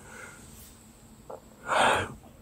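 A person's short, sharp breath taken close to the microphone near the end, after a faint mouth click.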